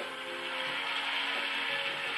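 Backing band of a soul song holding a chord in a short gap between the singer's lines, with a steady hiss over it, heard through a television's speaker.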